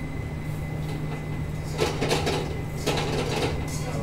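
Steady low hum of restaurant kitchen equipment running beside the tandoor, with a couple of brief faint noises about two and three seconds in.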